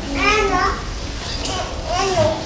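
A child's high voice calling out briefly in the first second, with a second short call near the end.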